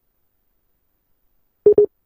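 A telephone line going dead, then two short, quick beeps at one steady pitch near the end: the tone of a phone call cutting off.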